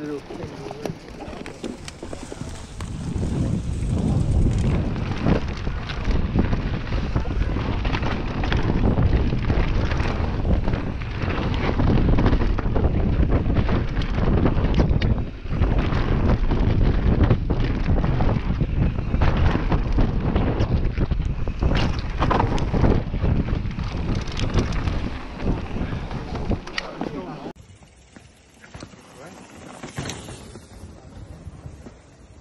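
Mountain bike ridden fast down a dirt trail, heard from a camera mounted on the bike: wind rushing over the microphone with the rattle and knocks of the bike jolting over bumps. The noise builds over the first few seconds and drops away sharply about three seconds before the end.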